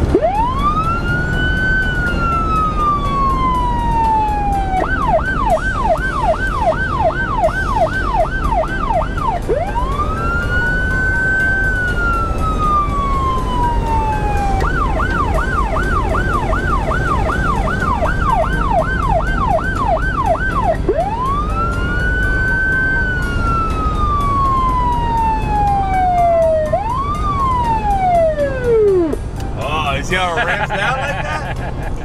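Federal PA200 electronic police siren switching between a slow wail, rising to a peak and gliding down, and a fast yelp of about three sweeps a second, alternating twice. Near the end it winds down in one falling tone. The Mustang's engine and road noise run underneath inside the cabin.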